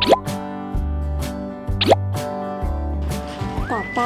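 Playful background music with a steady repeating bass line, and a quick rising pop sound effect at the start and again about two seconds in.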